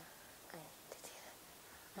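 Near silence in a pause between spoken sentences: room tone with a faint, brief voice sound about half a second in and a soft click about a second in.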